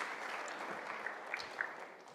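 Audience applauding, the clapping fading away steadily.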